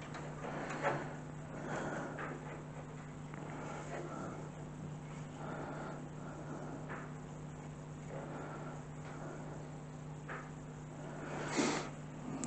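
Faint, occasional knocks and rustles of a plastic PC case fan and case parts being handled, over a steady low hum.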